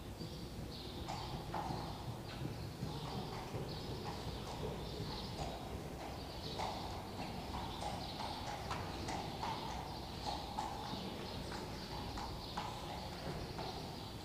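Friesian horse's hoofbeats, faint and repeated, as it moves in harness pulling a carriage over the sand footing of an indoor arena.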